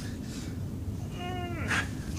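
A man's short, high, strained groan that drops in pitch at the end, followed by a sharp breath out. It is the effort of the final push-up of a set, over a steady low hum in the room.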